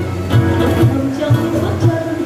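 A slow ballad played live on acoustic guitar, with a steady low pulse about twice a second.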